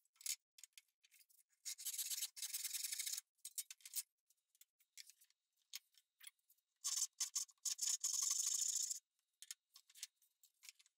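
Fine-toothed backsaw sawing through a thin strip of cherry in quick strokes, heard as a rasping run about two seconds in and a longer one from about seven to nine seconds, with short light scrapes between. The later run is a Lie-Nielsen 15 PPI saw finishing its cut.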